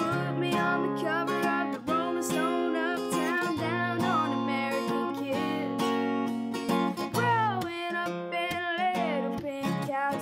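A boy singing a country melody over a strummed steel-string acoustic guitar fitted with a capo, the strumming steady throughout.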